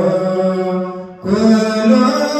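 Ethiopian Orthodox liturgical chant sung with long held notes, breaking off briefly about a second in and then resuming.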